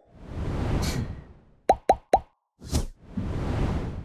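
Sound effects for an animated YouTube subscribe-button overlay: a whoosh, three quick pops in a row, then a short burst and another whoosh.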